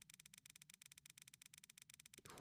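Near silence with a faint, rapid, even ticking, most likely the website upgrade wheel's ticking sound effect as its pointer spins.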